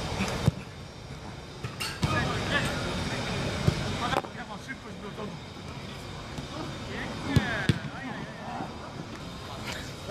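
A football being kicked on artificial turf: a handful of sharp thuds at irregular intervals, with players' shouts.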